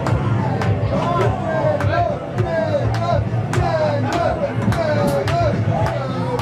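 Punk rock band playing live: drums hitting about twice a second over steady distorted guitar and bass, with a wavering pitched line above.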